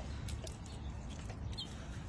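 Quiet outdoor background: a low steady rumble, with a few faint ticks and one brief high chirp near the middle.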